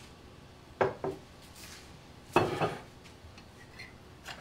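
Polish stoneware pieces being put back on wooden display shelves: a couple of light knocks about a second in, then a louder clatter of pottery a little past halfway.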